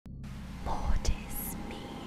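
Horror logo-sting sound effects with a whisper: a low rumble swells up about half a second in and ends with a sharp click, then a short high hiss and faint whispering follow.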